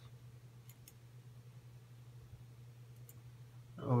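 Faint computer mouse clicks, a quick double click about three-quarters of a second in and a single click near three seconds, over a steady low hum.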